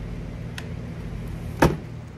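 Workshop handling noise: a faint click a little after half a second and one sharp knock near the end, as a plastic motorcycle saddlebag lid and a Torx screwdriver are handled, over a steady low hum.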